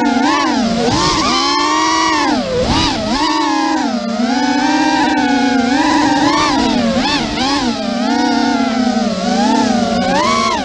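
Racing quadcopter's brushless motors and props whining, the pitch swooping up and down constantly as the throttle changes through turns and straights.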